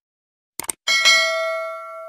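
Subscribe-animation sound effect: a quick double mouse click, then about a second in a bright bell ding that rings on with several tones and slowly fades.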